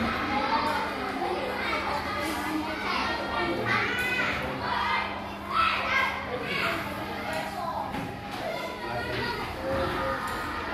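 A classroom of schoolchildren chattering and calling out at once, many high voices overlapping, loudest in a burst of calls around the middle.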